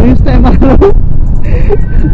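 Heavy wind rush and running noise from a KTM 390 Duke's single-cylinder engine being ridden at moderate speed, with a man talking over it in the first second.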